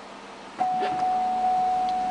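2007 Cadillac Escalade power tailgate warning tone: one steady high beep starting about half a second in and holding, a signal that the tailgate is about to open.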